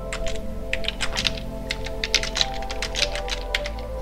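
Typing on a computer keyboard: a quick, irregular run of keystrokes, over soft background music with held tones.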